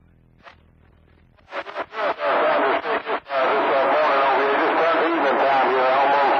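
CB radio receiving a distant station's voice over skip on channel 28: after a short quiet gap the signal comes back choppy and fading, then runs on as continuous but unintelligible speech through the receiver.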